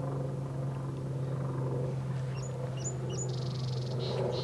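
A small songbird gives several short high chirps in the second half, then a rapid buzzy trill near the end, over a steady low hum.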